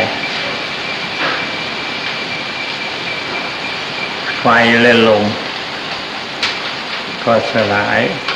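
Steady, fairly loud hiss of an old tape recording, with a thin steady high tone running under it. A man's slow speech in Thai breaks through twice, briefly about halfway in and again near the end.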